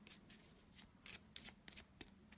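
Faint shuffling of a deck of oracle cards: a loose run of short card flicks and rustles.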